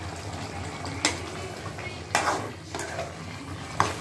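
Chicken pieces sizzling in a metal kadai while a steel spatula stirs them, scraping and knocking against the pan a few times: about a second in, around two seconds in and near the end.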